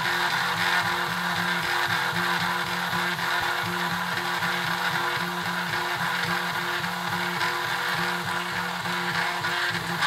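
3D printer's stepper motors, driven by a Smoothieboard and printing at 50 mm/s, whining as the print head makes its moves; the whine holds a few steady pitches that stop and start again every fraction of a second as each short move begins and ends.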